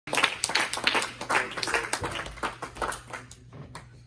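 A small congregation clapping their hands, a quick run of claps that thins out and dies away about three and a half seconds in.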